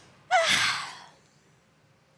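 A short, breathy vocal sound from a person, about a third of a second in, like a quick voiced exhale or gasp, fading out within about a second.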